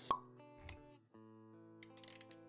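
Intro music for an animated logo: a sharp pop sound effect just after the start, a softer swish a little later, then steady held synth-like notes.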